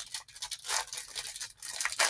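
Clear plastic wrapper of a trading-card pack crinkling and tearing as it is pulled open by hand, an irregular scratchy rustle.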